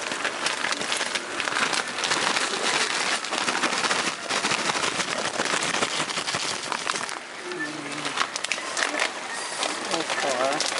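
Food sizzling and crackling in a hot pan as frozen spinach goes in on top of beef and tomatoes, with a metal spatula clicking and scraping against the pan as it is stirred.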